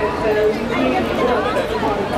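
Crowd chatter: many people talking at once close by, with no one voice standing out.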